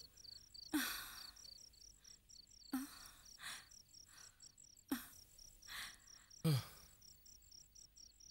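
Crickets chirping in an even, rapid pulse, a steady night background. Four or five short, soft breathy sounds about two seconds apart stand out louder over it.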